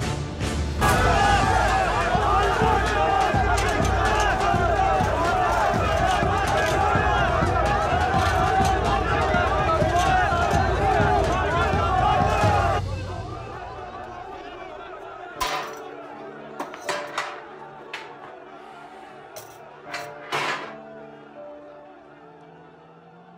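A large crowd shouting and cheering for about twelve seconds, then cutting off abruptly. Quiet background music follows, with a few sharp clicks near the end.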